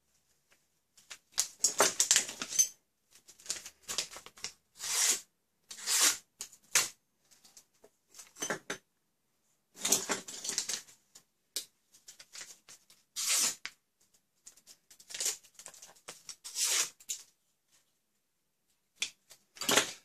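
Sheet of paper being cut with a cheap multitool's knife blade in a sharpness test: about a dozen short papery rasps with pauses between. The blade snags and tears more than it slices, which the owner takes to mean it still needs sharpening.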